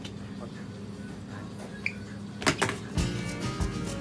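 A metal soup can hitting a hard floor twice in quick succession about two and a half seconds in, over a steady hum of room tone. Background music with guitar starts about half a second later.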